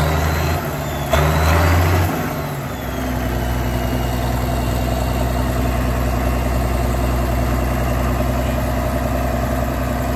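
Farmall 1206 Turbo tractor's turbocharged six-cylinder diesel engine, rising in two loud surges in the first two seconds, then settling into steady running.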